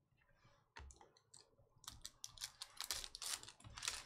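Trading cards being handled and a foil-wrapped card pack being crinkled and torn open: a few sharp clicks, then rapid crackling from about two seconds in.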